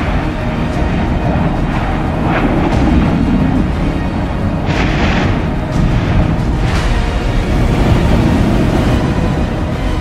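Music laid over the deep rumble of an erupting volcano's crater, with a few sudden blasts of eruption, the broadest about five seconds in.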